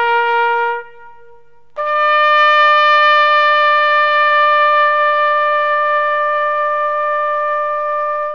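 A solo brass instrument, trumpet-like, ends a held note about a second in, leaving a faint echoing tail, then after a short gap sounds a higher note, about a major third up, and holds it for roughly six seconds.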